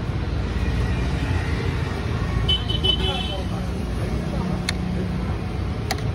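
Steady low rumble of street traffic with faint background voices. Two sharp knife taps on a cutting board come near the end as a green capsicum is cut.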